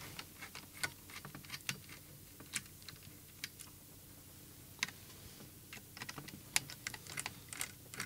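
Faint, irregular small clicks and taps of fingers handling the parts inside an opened radio-control transmitter, working at its ExpressLRS module; the clicks come more often near the end.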